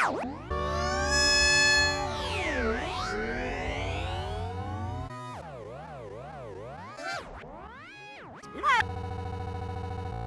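Electronically warped, synthesizer-like audio. Tones sweep up and down in pitch, loudest in the first two seconds. A warbling, zigzagging passage comes in the middle, and a buzzy steady tone near the end.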